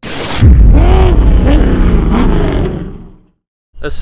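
Channel logo intro sound effect: a sudden whoosh, then a deep vehicle-like rumble with a drawn-out voice sliding in pitch over it, fading out after about three seconds.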